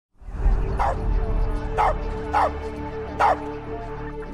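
A dog barking four short times, about once a second, over a low sustained music score of held tones.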